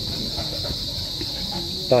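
Crickets chirring in a steady, high-pitched, unbroken chorus in the background.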